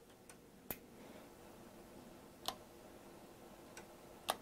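A few sharp clicks from hands plugging in the interlock connector and handling covered missile-style toggle switches. The loudest come at about two-thirds of a second in and halfway through, with fainter ones between, over a faint steady hum.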